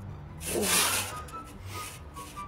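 Hand can opener cutting into the metal lid of a surströmming tin: a single rasping scrape, under a second long, about half a second in, over background music.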